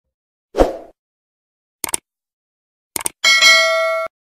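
Subscribe-button animation sound effect: a soft pop, a mouse click about two seconds in, a quick double click near three seconds, then a notification-bell chime ringing for the last second.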